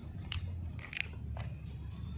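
Footsteps crunching on loose gravel, a few steps roughly half a second apart, over a steady low rumble.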